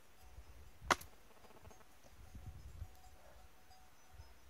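Faint rustling and handling noise as the phone is moved about, with a single sharp click about a second in.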